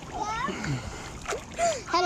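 Swimming-pool water splashing and sloshing close by, with a child's high voice calling out over it.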